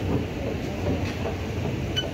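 Schneider SE-60 escalator running: a steady low mechanical rumble from the moving steps and drive, with one sharp click at the very end as a foot lands on the metal top landing plate.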